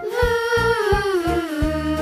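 A singer holding the letter sound /v/ ('vvvv'), sliding slowly down in pitch, over children's song backing with a steady low beat.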